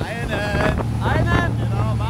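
A man's voice calling out over the steady low drone of a motorboat's engine, with rushing wake water and wind buffeting the microphone.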